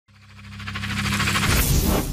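Synthesized intro riser: a low steady drone under a rapidly fluttering hiss, swelling steadily from near nothing to a loud peak at the end.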